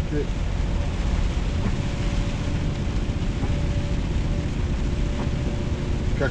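Steady drone of a truck's engine and tyres on a wet motorway, heard inside the cab, with a faint steady whine joining about two seconds in.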